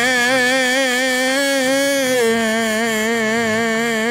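A man singing a long drawn-out "Amen" on one held note, dropping slightly in pitch about two seconds in.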